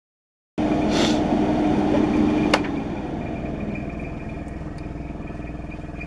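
Airbrushing set-up running: the spray-booth extractor fan and the airbrush's air supply give a steady mechanical hum and hiss. The sound cuts in suddenly about half a second in, with a sharp click near the middle, then drops in level as a low tone in it fades.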